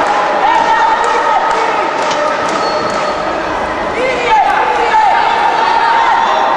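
Voices calling out and shouting in a large, echoing sports hall, with a few sharp knocks scattered through.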